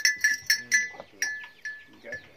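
Metal bell on a cow's neck clanking as the cow tosses its head: a quick run of ringing strikes, about four a second, that slows and dies away toward the end.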